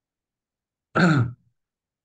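A man's short vocal sound about a second in, falling in pitch and lasting under half a second, with dead silence either side of it.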